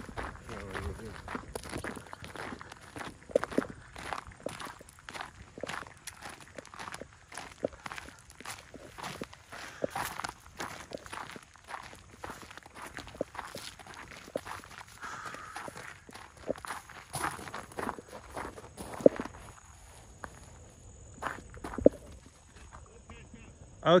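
Footsteps of people hiking a rough trail: irregular crunching and scuffing steps, with a few sharper knocks in the second half.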